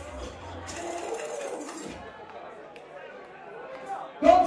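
Crowd chatter and scattered talking voices, fairly quiet, while the sound system's music has stopped between tunes.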